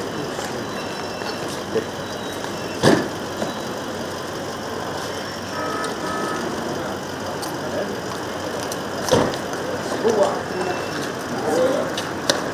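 Steady hum of a vehicle engine idling in a car park, with murmured voices and two sharp knocks, one about three seconds in and one about nine seconds in.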